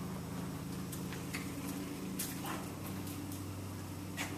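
Steady low hum in a quiet room, with a few faint clicks and taps from a man's footsteps and a small terrier's paws on a hard floor as they walk and stop.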